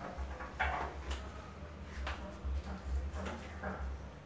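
Flower stems and leaves being handled and pushed into an arrangement: a handful of short, crisp rustles over a low, uneven rumble.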